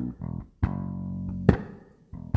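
Electric bass guitar played fingerstyle on its own: a short riff of low plucked notes, one held for about a second, each with a sharp attack and brief gaps of near quiet between them.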